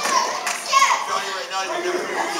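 Spectators shouting and yelling over one another in a large hall, with children's high voices prominent among them.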